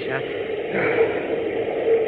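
Steady rushing noise with a constant low hum under an old 1940s radio drama transcription, between lines of dialogue.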